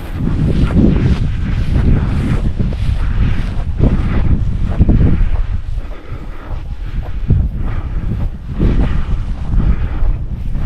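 Wind buffeting the microphone with a heavy, gusting rumble, over the rhythmic swish of steps through tall dry prairie grass at about two a second.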